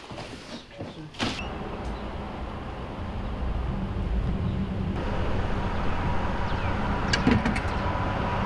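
A couple of sharp cracks as drywall is broken out of a stud wall by hand, then steady outdoor traffic noise, a little louder from about halfway through.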